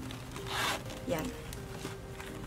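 The zipper of a small fabric pouch being pulled, one short zip about half a second in.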